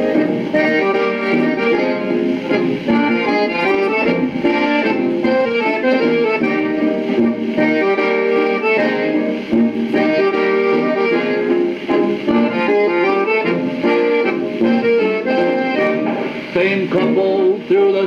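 Old-time dance band playing an instrumental waltz strain of a called quadrille, heard from a phonograph record with the narrow treble of an old recording.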